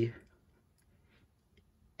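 A voice trails off at the start, then near silence with a few faint clicks.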